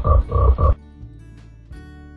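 Frog croak sound effect: a quick run of croaks that stops under a second in, followed by soft background music.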